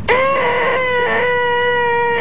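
A man's long, nasal, high-pitched "eeeeeh" whine, held on one steady pitch: the deliberately grating "most annoying sound in the world". It starts abruptly.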